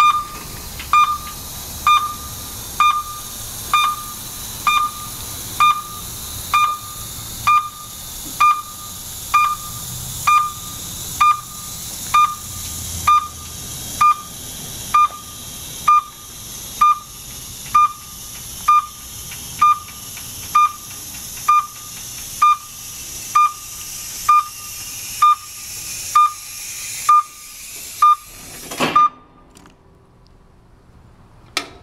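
Snorkel Wildcat SL15 scissor lift's descent alarm giving a short, high beep about once a second as the platform lowers, over a steady hiss. The beeping stops about a second before the end with a brief thump as the platform comes down.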